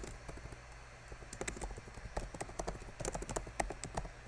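Typing on a computer keyboard: quick, irregular runs of key clicks, several a second.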